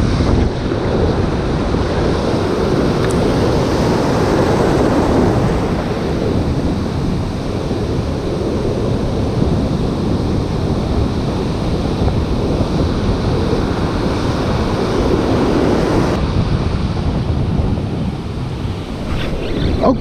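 Wind buffeting the microphone over breaking ocean surf: a loud, steady rush of noise that swells a little about four seconds in and again around fifteen seconds.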